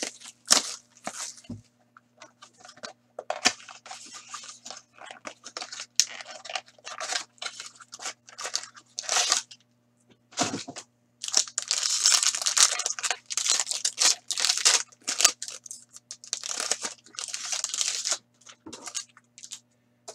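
Trading-card packs being opened by hand: wrappers torn and crinkled, and cards and cardboard handled, in a run of short irregular rustles that are busiest in the second half.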